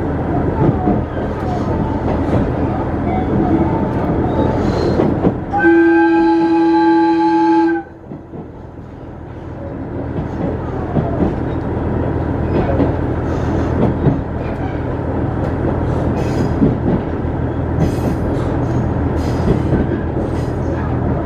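A diesel railcar's horn sounds once about six seconds in, a steady pitched note held for about two seconds, over the continuous running noise of the train. When the horn stops the background noise drops suddenly, then builds back up over a few seconds.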